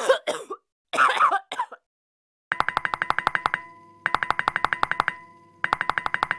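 A person coughing in two short fits, then a rapid clicking sound effect in three runs of about a second each, with a faint steady tone under the clicks.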